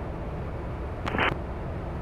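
Steady low drone of the Comco Ikarus C42C's engine and propeller in cruise, heard muffled through the pilot's headset intercom, with a brief blip about a second in.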